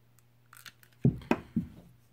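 Handling noise from tools on a table: a faint rustle about half a second in, then two sharp knocks about a second in and a softer third, as the torch lighter is put down and the pliers picked up.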